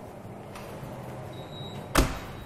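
Wheeled insulated food-delivery trolley rolling across a hard floor, a low rumble, with a faint click about half a second in. A sharp knock sounds at the very end.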